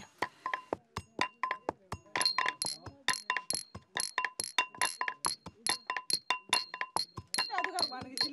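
A wooden pestle pounding in a wooden mortar in a steady rhythm, about three to four strokes a second. About two seconds in, two small porcelain cups start clinking together in time with it, ringing.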